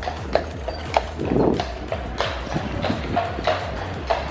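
Hooves of a carriage horse clip-clopping on brick paving as a horse-drawn carriage passes close by, in a run of irregular sharp knocks over steady street noise.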